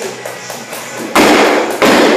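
A loaded barbell with bumper plates dropped from overhead hits the floor about a second in, then bangs down again a moment later as it bounces.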